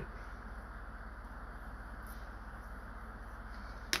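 Low, steady background hum with a faint hiss, and a single sharp click just before the end.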